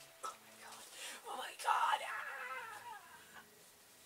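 A woman laughing softly and making a drawn-out vocal sound that falls in pitch, without clear words.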